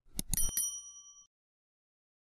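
Subscribe-button animation sound effect: a quick run of mouse clicks, then a short bright bell ding that rings for under a second and cuts off.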